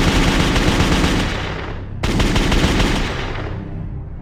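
Rapid automatic gunfire in two long strings of shots, the second starting about two seconds in. It fades away near the end as music comes up.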